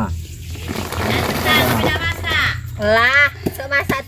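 A voice, speaking or singing, is the loudest sound, over the scraping of a machete blade along a sugarcane stalk, with a few short knocks near the end.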